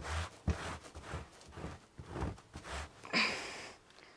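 A small hand-held hair-removal brush scrubbed hard across a quilted saddle pad in short rasping strokes, about two a second, pulling loose horse hair out of the fabric.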